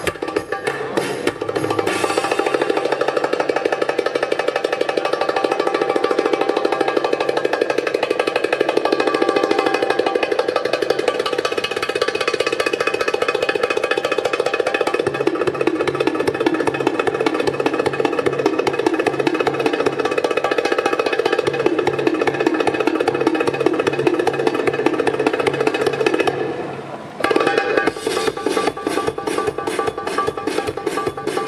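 Middle Eastern belly dance music with drum percussion playing continuously; it dips briefly near the end and comes back with a sharper, more clipped rhythm.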